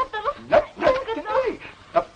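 A woman crying in short, wavering whimpering sobs.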